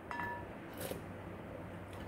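A wooden spoon clinks against a glass mixing bowl of broth just at the start, a brief ring that fades within a few tenths of a second, followed by a faint light knock a little under a second in.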